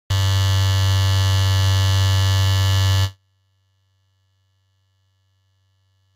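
A loud, steady electric buzz with a strong low hum at its core, lasting about three seconds and cutting off abruptly, leaving a faint low hum.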